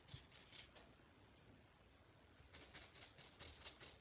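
Paintbrush bristles rubbed quickly back and forth on a paper towel to blot a freshly washed brush dry: faint, rhythmic swishing at about six strokes a second. It pauses for about a second and a half in the middle, then starts again.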